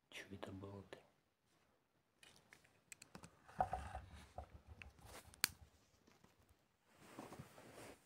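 A brief low murmur of a voice in the first second, then a run of sharp clicks, taps and dull bumps, with low rumbling from a phone camera being handled and lifted off the table.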